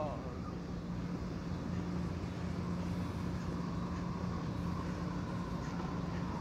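Skateboard wheels rolling on smooth concrete, a steady low rolling noise as the skater rides toward the rail.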